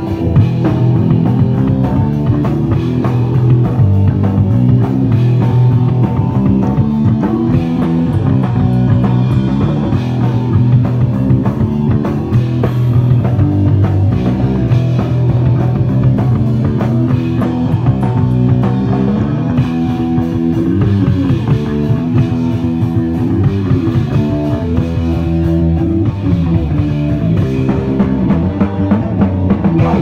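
Live punk rock band playing a song, electric guitar, bass and drum kit, loud and dense, coming in right at the start.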